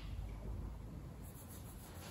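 Faint rustling and scratching of handling and cloth movement, over a low steady rumble of room tone.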